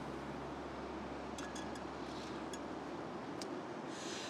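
Small MSR PocketRocket canister stove burning steadily on butane-propane gas, an even hiss of the burner flame, with a few faint ticks about midway.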